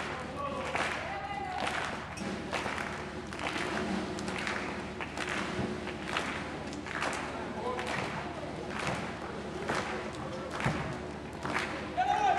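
A steady rhythm of sharp hits, a little faster than one a second, with voices faintly underneath.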